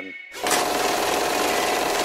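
A fast-forward sound effect: a steady, dense whirring buzz with a constant tone running through it, starting about half a second in.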